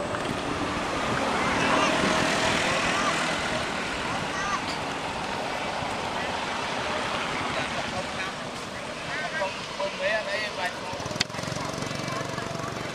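Indistinct voices of people talking some way off over a steady outdoor background noise, with short bursts of chatter and a single sharp click near the end.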